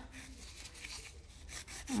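A hand nail file rasping against the free edge of a gel-coated fingernail in a few faint, short strokes, mostly in the second half.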